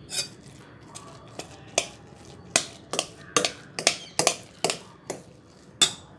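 A stainless steel spoon knocking and scraping against the inside of a metal pressure cooker while mashing soft-cooked rice porridge. There are about a dozen sharp clinks at an uneven pace, roughly two a second, and the loudest comes near the end.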